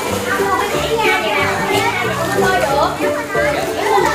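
Children's voices shouting and calling over one another, with music playing in the background.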